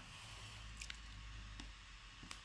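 Faint low rumble from a hand-held camera being moved, with a few light clicks of a computer mouse.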